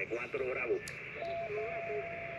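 A distant amateur station's voice heard over single-sideband through the transceiver's speaker, thin and band-limited over a hiss of static. A steady whistle comes in just past halfway. It is a strong, readable signal, reported as 5-8 to 5-9.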